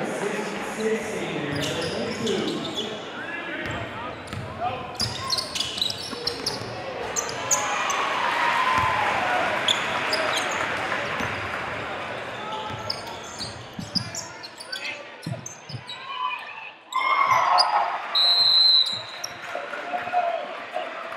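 Live gym sound from a high school basketball game: crowd voices and cheering, with basketball bounces and short sharp clicks of play on the court. The crowd noise swells in the middle and again in loud bursts near the end, where a short shrill high tone also sounds.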